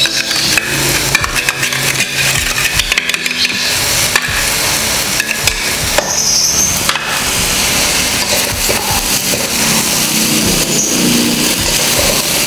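Noodles stir-frying in a wok: a steady sizzle with repeated scraping and clattering of a metal spatula stirring and tossing them.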